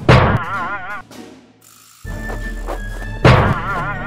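Cartoon frying-pan strike: a sharp thunk followed by a wobbling, warbling ring that fades within a second. A second loud hit lands a little over three seconds in, over background music.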